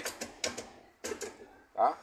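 A few light metallic clicks and taps in the first half second as a rear brake drum is handled and fitted over the hub.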